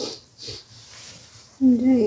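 Mostly speech: a voice starts talking loudly near the end, after a few short, soft noises.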